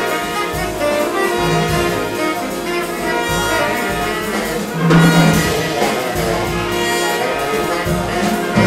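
Big band jazz played live: trumpets, trombones and saxophones sounding sustained chords together over bass, with a louder accent about five seconds in.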